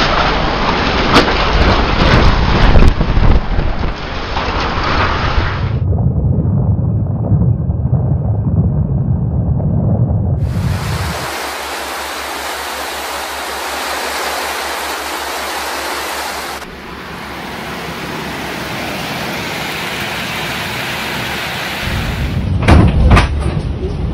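Storm noise of strong wind and heavy rain, with loud low buffeting on the microphone for the first several seconds. It changes abruptly twice: to a lower rumble about six seconds in, then to a steady, bright rushing hiss from about ten seconds on.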